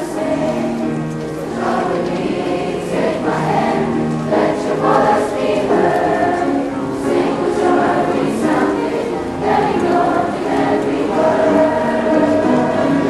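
Middle school concert chorus singing, many voices holding notes together on several pitches at once.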